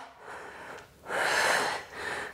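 A woman's audible breath into a close microphone during a dumbbell exercise: a faint breath, then a stronger one lasting about a second.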